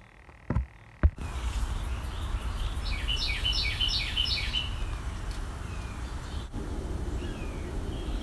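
Steady workshop room noise with a low hum, starting about a second in after two short clicks. In the middle a bird gives a quick run of repeated, falling chirps for about a second and a half.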